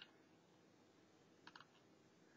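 Near silence: room tone, with two faint clicks, one at the start and another about a second and a half in.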